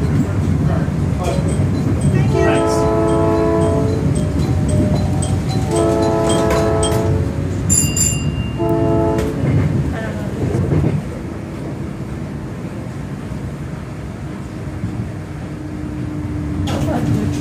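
South Shore Line electric train's horn sounding three blasts, two long and then a short one, over the steady rumble of the moving train, heard from inside the car. The rumble quietens about eleven seconds in.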